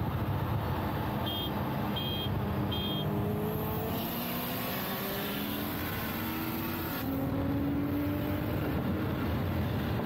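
A car engine pulling hard under acceleration, its pitch rising and then stepping down several times as the gearbox upshifts. It is heard from inside the cabin. Three short beeps sound in the first three seconds.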